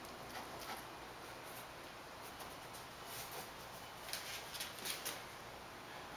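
Faint, short scrapes of a small metal putty knife working wet drywall joint compound, scooped from a plastic tub and spread across a seam on foam armor, with a cluster of strokes about four to five seconds in.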